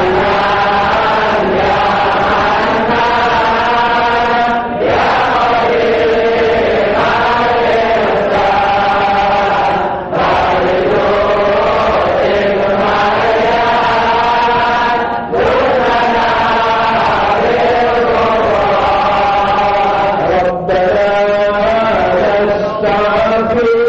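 Islamic devotional chanting: voices in long, melodic phrases of about five seconds each, with short breaks for breath between them.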